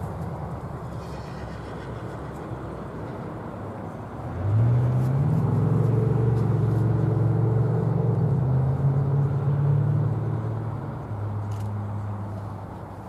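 A motor vehicle's engine running close by: it comes up sharply about four seconds in, holds a steady low note for about six seconds, then eases off near the end over a low background hum.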